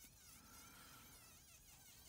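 Faint high-pitched whine of a handheld rotary tool with a small burr grinding into walnut wood, its pitch wavering up and down.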